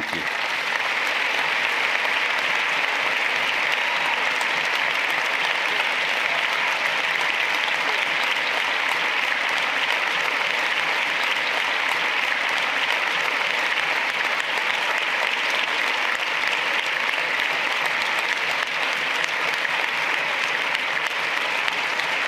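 Audience applauding in a long, steady round of clapping.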